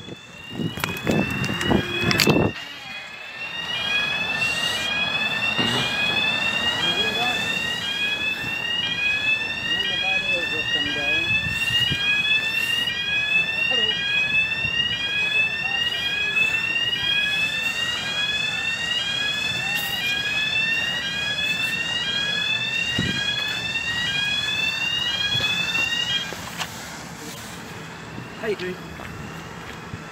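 Swing bridge road-barrier warning alarm sounding a short rising tone over and over while the barriers lower across the road. It cuts off suddenly a few seconds before the end, once the barriers are down.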